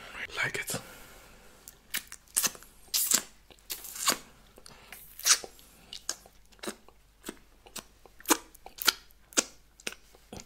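Close-miked wet mouth sounds of licking the fingers: a string of short, sharp smacking clicks, about two a second, irregular in loudness.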